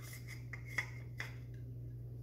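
Gloved hands handling a metal air-gun barrel with a brass end nut: light rubbing and a few small clicks and taps, over a steady low hum.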